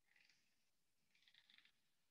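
Near silence: room tone, with two faint short scratchy noises, the second, longer one about a second in.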